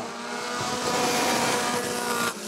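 Four-cylinder midget race cars running at speed past the grandstand, engines held high in a steady hum that grows louder over the first second as the pack comes by.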